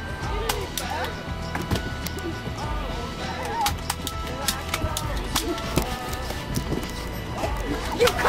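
Toy-gun fight: a string of sharp clicks and bangs scattered irregularly over background music and voices.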